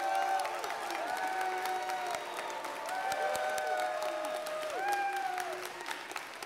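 Audience applauding, with several long held tones sounding over the clapping.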